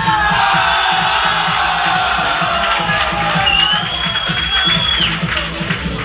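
Bar crowd cheering and whooping over dance music with a steady beat, starting with a sudden rise in loudness. Someone whistles one long, high note about halfway through.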